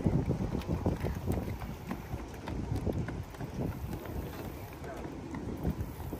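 Footsteps on the planks of a wooden boardwalk, irregular and quick, with wind buffeting the microphone.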